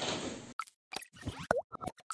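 Room noise that cuts off suddenly about half a second in, then a quick series of short cartoon-style plop and pop sound effects from an animated logo intro, one of them bending up and down in pitch.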